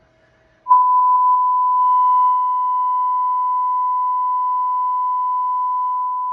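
Steady, loud 1 kHz sine test tone through a Cicada Audio CH65.2 6.5-inch coaxial horn motorcycle speaker, starting about a second in with a few clicks. It is the gain-setting tone: the amplifier is being brought to about 37 volts, just under 700 watts RMS into the two-ohm driver.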